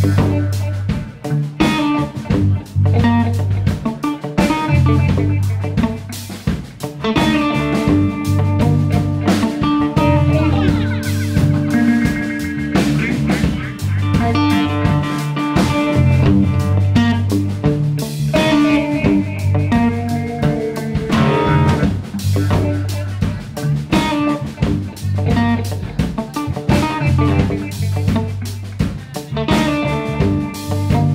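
Live rock band playing an instrumental section: electric guitar lines over a repeating electric bass figure and a drum kit beat.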